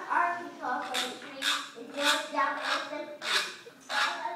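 A group of children's voices in a steady rhythm, with sharp hissy accents about every 0.6 s.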